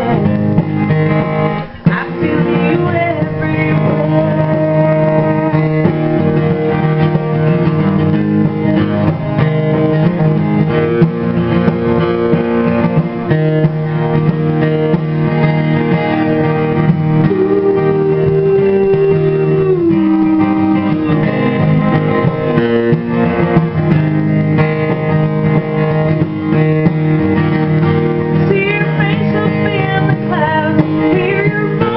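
Acoustic guitar playing a song, with a woman singing near the start and again near the end; the middle is mostly guitar.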